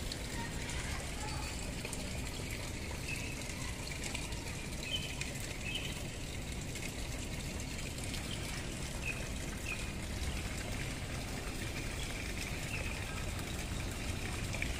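Small garden fountain splashing steadily into a water-lily pond, with a few faint short chirps over it.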